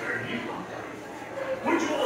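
A man's recorded voice speaking in character as a pirate, played from a wall-mounted video screen.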